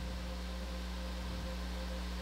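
Steady room tone of a ship's ROV control room: a constant low electrical hum with an even hiss of ventilation and equipment fans.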